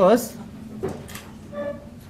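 Marker drawing on a whiteboard: a couple of short scratchy strokes and a brief squeak about one and a half seconds in.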